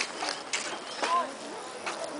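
Footsteps on a wooden footbridge, knocking about twice a second, with a brief faint voice in the distance.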